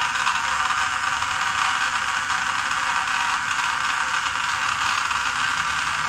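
Small DC gear motor driving a hobby conveyor belt, running steadily with an even mechanical rattle.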